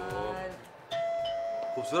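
Doorbell ringing: one steady tone that starts suddenly about a second in and holds.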